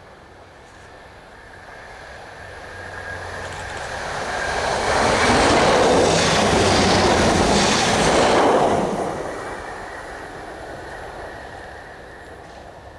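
Class 755 Stadler FLIRT bi-mode train approaching, passing close by at speed and fading away, its wheel-and-rail noise loudest for about four seconds in the middle.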